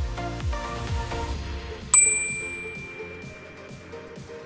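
Electronic background music with a steady beat; about two seconds in, a single loud, bright bell ding rings out and fades over about a second and a half.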